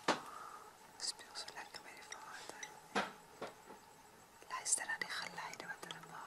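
Faint whispering voices, with sharp clicks at the very start and about three seconds in.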